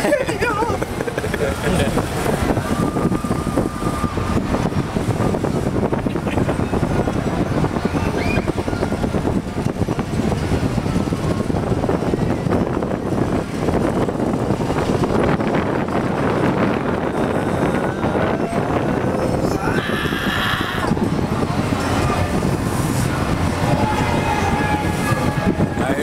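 Steady ride and ambient noise inside a moving Wonder Wheel swinging car, with indistinct voices in it and a brief higher-pitched sound about twenty seconds in.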